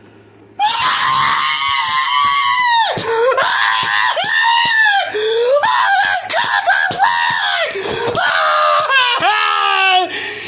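A person screaming in frustration, wordless and high-pitched, after a rejected login code. It starts suddenly about half a second in and runs on as several long screams that bend up and down in pitch, with short breaks between them.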